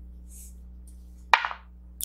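A four-sided die rolled into a dice tray, landing with one sharp knock about a second and a third in.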